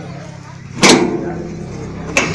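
One sharp metallic clunk about a second in, from the sheet-metal bonnet side panel of a Swaraj 744 XM tractor being handled as it is opened to show the engine, fading away over the following second.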